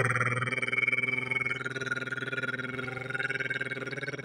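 A man imitating a drum roll with his voice: a sustained rolled-tongue trill held on one steady pitch, with a fast, even flutter.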